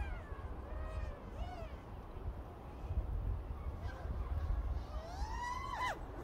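FPV quadcopter's brushless motors and two-blade propellers whining, the pitch rising and falling with short throttle changes. About five seconds in, the whine climbs steadily to its highest and loudest, then drops off sharply as the throttle is cut.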